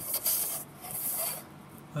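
Graphite pencil scratching on paper in two short strokes, each about half a second long, while making a small mark on a drawing.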